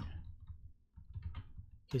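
Computer keyboard typing: a few faint, scattered key clicks.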